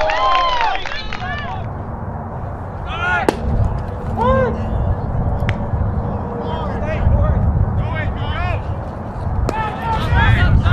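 Voices calling out on a baseball field over a steady low rumble, with a sharp crack about three seconds in and another just before the end.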